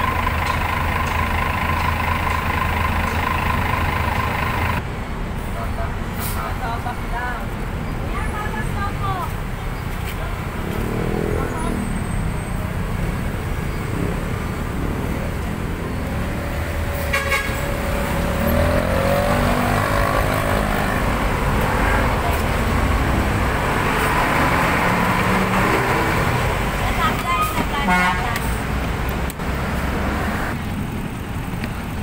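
Busy city road traffic: vehicle engines running and horns honking. A steady engine hum at the start cuts off suddenly about five seconds in.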